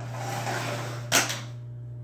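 A short stretch of rustling, then a single sharp knock about a second in, over a steady low hum.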